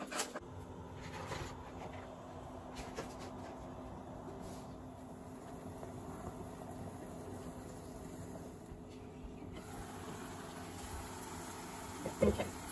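Faint steady kitchen background noise: a low hiss with a steady hum, with a few light clicks right at the start.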